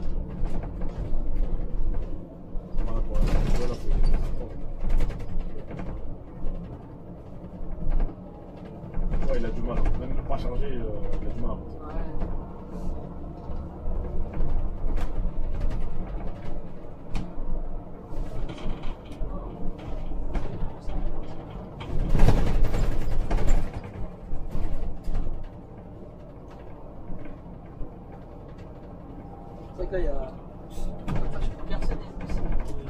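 Scania Citywide natural-gas city bus driving, heard from the driver's cab: a steady low engine and road rumble, with a louder rush about two-thirds of the way in. Faint conversation comes and goes over it.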